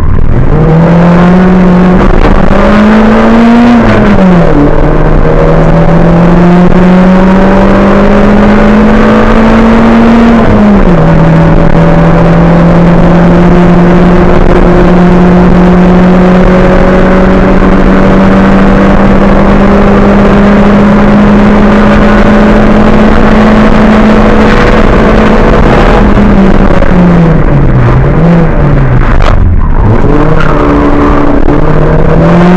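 Race car engine heard loud from inside the cabin under full throttle, pulling up through the gears with sharp upshifts about 4 and 11 seconds in, then holding a long, slowly rising pull. Near the end the revs fall in a few quick dips and blips as the driver brakes and downshifts for a hairpin.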